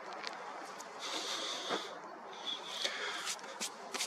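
Two slow, hissy breaths close to the microphone, the first lasting nearly a second, over a steady low background hiss, with a few small sharp clicks.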